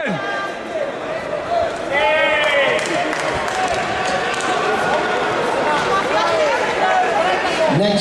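Several voices calling and shouting over the chatter of a large hall, with scattered knocks and thuds mixed in.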